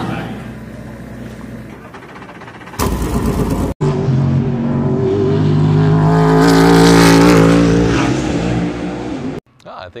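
The NASCAR Garage 56 Chevrolet Camaro test car's V8 engine running at speed on track, a steady note that grows louder to a peak about seven seconds in and then cuts off abruptly. A loud, one-second rush of noise comes about three seconds in.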